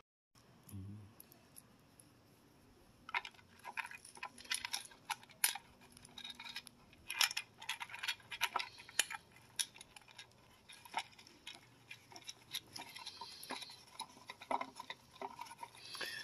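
A small screw and metal washer clicking and clinking against the plastic foot of a roof-rack crossbar as they are fitted and turned in by hand: a scatter of faint, irregular ticks.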